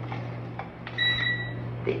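A single electronic beep about a second in: one steady high tone lasting under a second, over a low steady hum.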